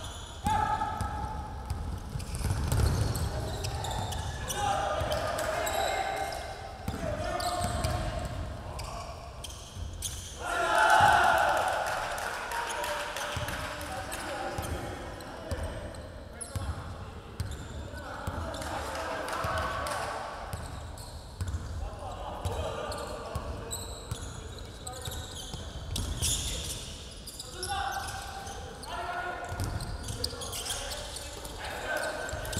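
A basketball bouncing on a hardwood gym floor during play, with players' voices calling out over it. The voices are loudest about eleven seconds in.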